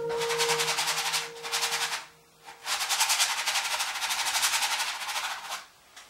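Wide flat paintbrush scrubbing oil paint across a canvas in rapid back-and-forth strokes: a scratchy rasp in two spells, about two seconds and then about three seconds, with a short pause between.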